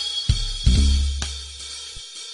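Cool jazz playing: a drum kit's cymbals and hi-hat over deep bass notes that sound near the start and fade away.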